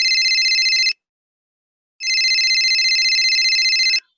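Telephone ringing for an incoming call: a fast-trilling ring, two rings with about a second's pause between them, cut off when the call is answered.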